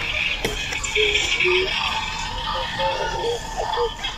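Store background music under faint indistinct voices, with a single sharp click about half a second in.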